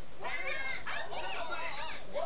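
Voices talking on a live television broadcast.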